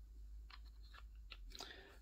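Near silence with a few faint, light clicks and taps from paint bottles and a brush being handled on a hobby desk, coming closer together near the end.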